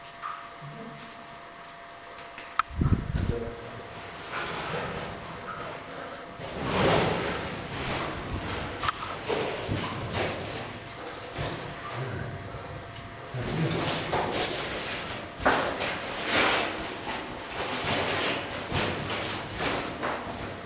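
Footsteps wading and sloshing through shallow water on the floor of a flooded mine tunnel, in irregular surges every second or two, with a sharp click and a thump near the start.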